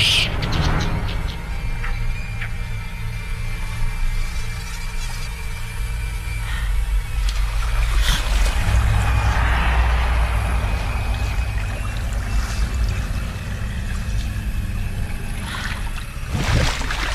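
Film soundtrack mix: a low, steady, suspenseful music drone under river water sloshing and trickling around people wading, with a sharp rising shriek right at the start from a white-faced capuchin monkey.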